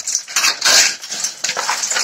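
Glued expanded-polystyrene insulation board being pried off a wall with an old handsaw blade: the foam scrapes and tears away from the adhesive in irregular bursts, loudest about half a second in, along with its reinforcing mesh and plaster skim.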